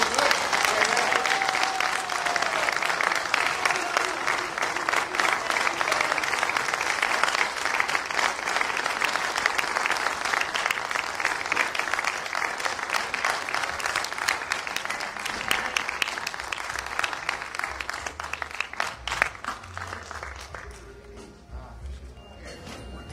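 Audience applauding: dense clapping that starts abruptly, is loudest at first, then slowly thins out and dies away near the end.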